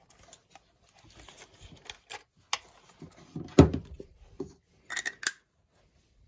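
Handling noise of a camera and metal lens adapters: light rubbing and small clicks, with one louder knock about three and a half seconds in and a few sharp clicks near the end.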